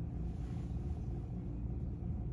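Steady low room rumble with no distinct events.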